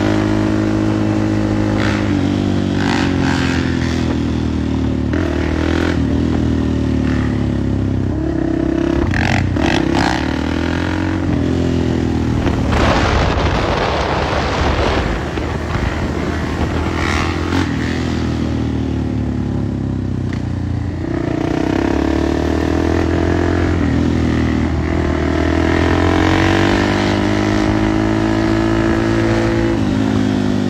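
Dirt bike engines revving, their pitch climbing and dropping over and over as the throttle is worked. There is a brief rush of noise about halfway through.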